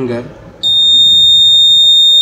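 The circuit board's electronic alarm buzzer comes on about half a second in and holds one loud, steady high-pitched tone, the signal that the scanned fingerprint was not found.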